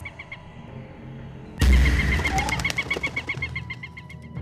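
Film soundtrack of a dove loose in a house: dove sounds over music. About a second and a half in, a sudden loud low hit comes in, followed by a quick run of short pulses, about seven a second, lasting about two seconds.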